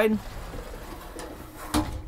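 Mirrored sliding wardrobe door rolling along its track with a faint low rumble, then a single knock near the end.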